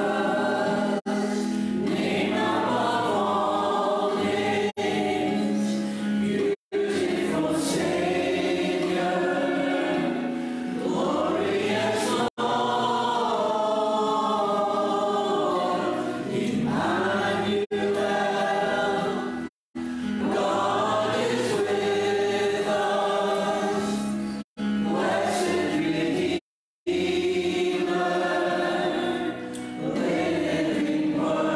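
A choir singing a slow hymn, a recorded version played back in the room. The sound cuts out abruptly to silence for a moment several times.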